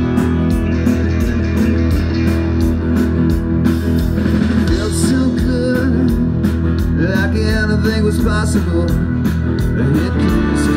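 An amplified live rock band playing: electric guitars over a steady drum beat, with bending lead notes in the second half.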